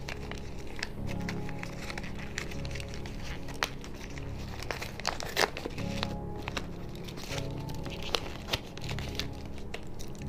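A chocolate bar's paper wrapper crinkling and crackling as it is unfolded by hand, in irregular handling noises with one sharper crackle about five seconds in, over soft background music.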